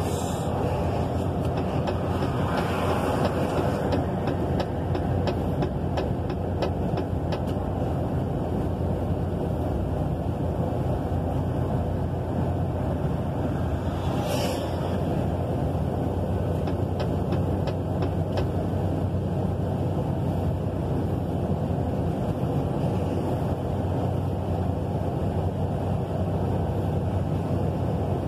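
Steady drone of a truck's engine and tyres on a wet road, heard from inside the cab, with a brief rush about halfway through.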